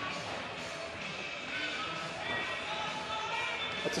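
Background music playing over crowd chatter and distant voices.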